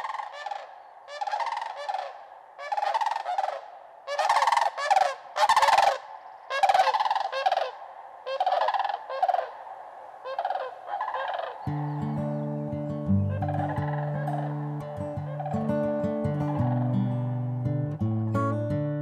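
A flock of sandhill cranes calling as they pass overhead: a string of repeated calls, loudest about four to seven seconds in. About twelve seconds in, low sustained musical notes enter beneath the calls, with plucked notes near the end.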